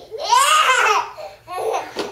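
A baby laughing: one long laugh, then a shorter one near the end.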